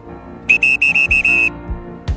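Background music playing, with a quick run of six short, high whistle-like beeps starting about half a second in and stopping a second later.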